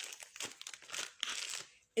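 Plastic wrapping crinkling in irregular rustles as it is pulled off a pink silicone sterilizing cup.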